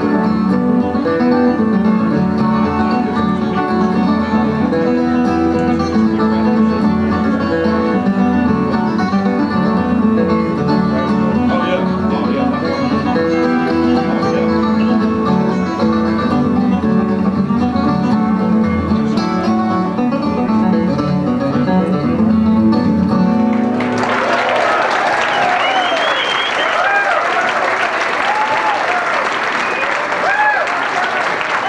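Two acoustic guitars playing an instrumental tune together. About 24 seconds in, the tune ends and the audience breaks into applause with cheering.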